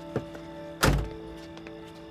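A car door shutting once with a heavy thunk a little before a second in, after a lighter click, over soft sustained background music.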